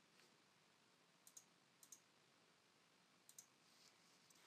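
Near silence, broken by faint computer mouse clicks: three quick double clicks, one at about a second in, one just before two seconds and one past three seconds.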